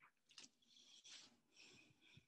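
Near silence: faint, scattered clicks and small rustling noises close to a microphone.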